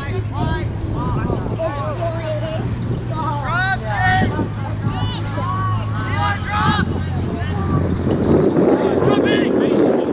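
Players and spectators shouting and calling across a soccer field during play: many short, distant calls throughout. A steady low hum runs beneath them and stops about eight seconds in, after which a rushing noise takes over near the end.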